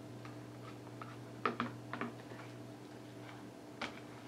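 A few soft, irregularly spaced clicks over a steady low hum, the most distinct about one and a half seconds and two seconds in, and one just before the end.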